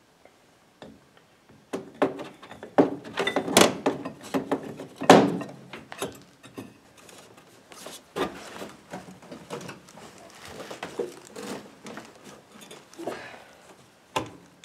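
Snowmobile drive belt being worked by hand onto the bolted-open secondary clutch of a 2015 Arctic Cat XF 7000: irregular knocks and thunks of belt against the metal clutch sheaves starting about two seconds in, the loudest about five seconds in, then softer rubbing and scraping.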